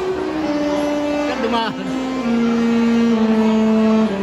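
Wind band with an alto saxophone soloist playing long held notes that step down in pitch. The last, lowest note is held longest and loudest through the second half.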